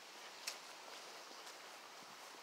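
Faint outdoor background hiss, near silence, with a single soft click about half a second in.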